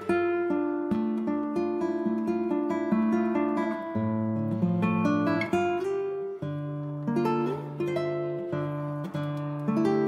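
Background music: an acoustic guitar picking a run of plucked notes over sustained chords.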